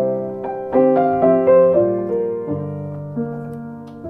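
Piano playing a short chord passage that demonstrates negative-harmony chord substitutions. New notes strike every half second or so with the top line stepping downward, and the final chord is held and fades away.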